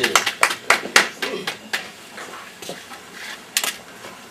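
A short run of sharp clicks, about four a second, that dies away after about two seconds, followed by two more clicks near the end.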